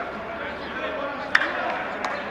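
Several men's voices talking over one another, with a few sharp knocks. The loudest knock comes a little past halfway.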